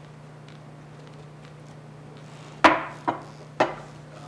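Three sharp knocks on a tabletop, about half a second apart, starting a little past halfway; the first is the loudest.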